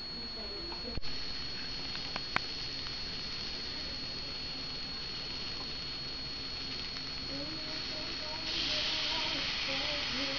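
Chopped vegetables sizzling in a hot pot, a steady hiss that grows louder about eight and a half seconds in, with a thin high whine over it and a couple of small clicks.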